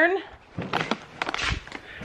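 Rustling and scattered sharp ticks of a handheld camera being handled and moved close to its microphone.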